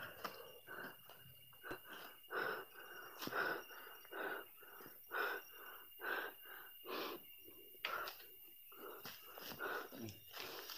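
A person breathing hard and fast, about two wheezy breaths a second.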